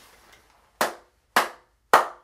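One person clapping slowly, three single claps about half a second apart, starting a little before the middle.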